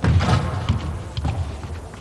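Irregular thuds of a handball bouncing and players' feet on a sports hall floor, echoing in the large hall; the loudest thud comes right at the start, with smaller knocks after it.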